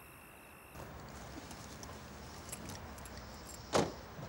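Light clicks and jingles of car keys, then a single sharp, loud clunk near the end as the car's door latch is pulled open.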